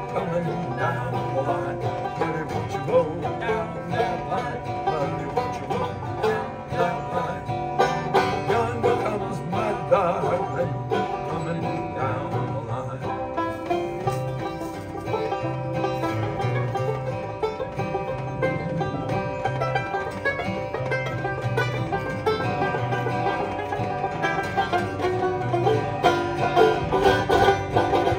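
Banjo and acoustic guitar playing an instrumental break between sung verses of a folk song. Quick plucked banjo notes run over strummed guitar chords at a steady pace.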